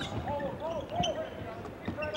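Live court sound of a basketball game: a basketball bouncing on a hardwood floor, with voices in the arena.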